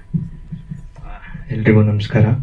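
Low, uneven thumps and rumble of a handheld microphone being handled as it changes hands. Then a man begins speaking into it about one and a half seconds in.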